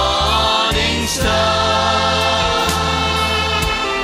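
A choir singing a gospel worship song with a live band of keyboards, guitars and bass, with a few cymbal strokes.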